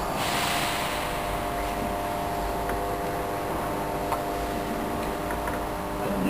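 Steady hum of room tone made of several constant pitches, with a short hiss in the first second and a few faint clicks.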